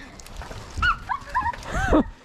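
A child's short, high-pitched squeals and yelps while being swung in a hammock, a quick run of them in the second half and a louder squeal near the end, with a low rumble under the loudest ones.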